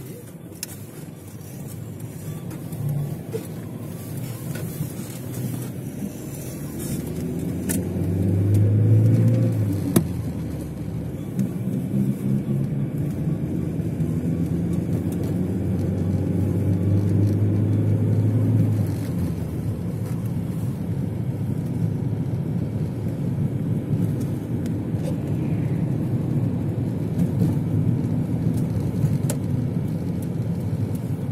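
Car engine and road noise heard from inside the cabin as the car pulls away and accelerates, the engine note rising in pitch several seconds in. It then settles into a steady driving hum.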